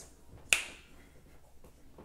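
Two sharp finger snaps, one about half a second in and another right at the end, in a quiet small room.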